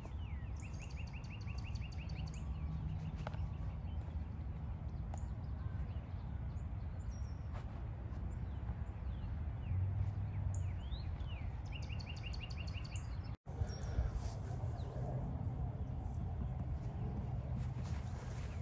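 Songbirds calling over steady outdoor background noise, with a rapid run of repeated high chirps near the start and again about twelve seconds in.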